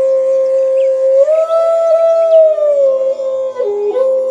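Background music: a flute holding long, sustained notes over a steady drone. It slides up to a higher note about a second in and glides back down near three seconds.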